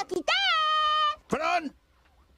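A cartoonish baby voice lets out a long, high-pitched wailing cry held for nearly a second. A shorter cry follows, falling in pitch.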